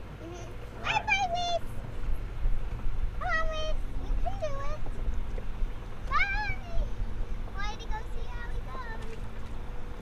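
A small girl's high-pitched voice making short, sing-song calls, about four in a row, each gliding up and down in pitch, over a steady low rumble of wind and river on the boat.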